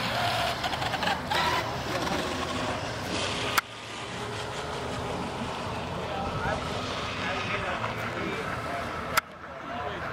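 Indistinct chatter of bystanders over a steady background noise, broken by two sharp clicks, one about three and a half seconds in and one near the end, each followed by a sudden drop in level.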